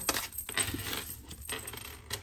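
Tarot cards being handled: a card drawn from the deck and laid down on the spread, with a series of light clicks and flicks of card stock.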